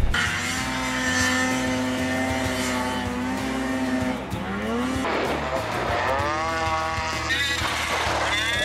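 Snowmobile engine running at high revs, holding a steady pitch for about four seconds and then rising sharply in pitch several times as the throttle is opened.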